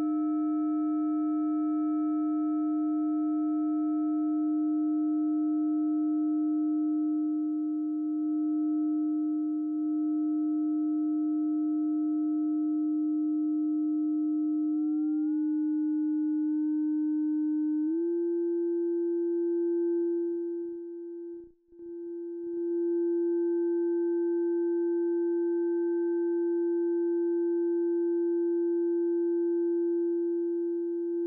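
Electronic FM synthesis tone from a Pure Data patch, played through a vcf~ bandpass filter: one strong steady low tone with fainter higher overtones. About halfway through the overtones step up in pitch, a few seconds later the main tone steps up slightly as the settings are changed, and the sound cuts out for a moment about two-thirds of the way in.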